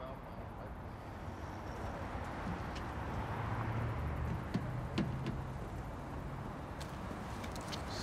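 Street ambience with distant traffic: a low steady rumble that swells slightly in the middle, with a few faint clicks.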